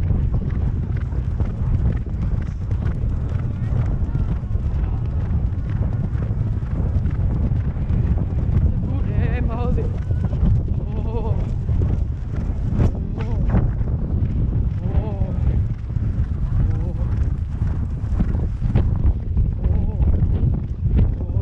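Hoofbeats of a horse cantering on grass, heard from the saddle under a heavy low rumble. A person laughs about ten seconds in, with other brief voices after.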